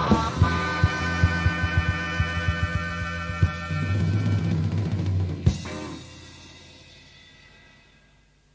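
Electric blues band (harmonica, guitar, bass and drums) ending a song: a long held final chord over rapid drum hits, a last accent about five and a half seconds in, then the chord rings out and fades away.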